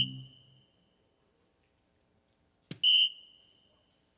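DARTSLIVE electronic soft-tip dartboard: its triple-hit sound effect fades out at the start. A little under three seconds in, a dart strikes the board with a sharp click, and the board answers with a short high electronic tone that dies away within about half a second, registering a single 20.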